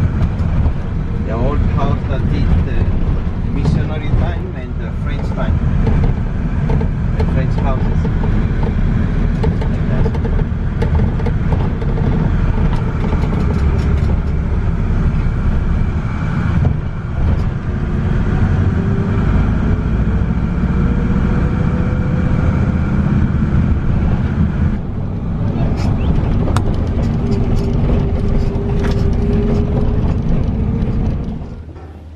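Cabin noise of a moving van: steady engine and road rumble, with an engine whine that climbs slowly in pitch about two-thirds of the way through and again near the end as it speeds up. Muffled voices in the first few seconds.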